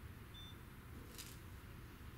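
Quiet room tone with a low steady hum. A faint, very short high beep comes about a third of a second in, and a brief soft high hiss about a second later.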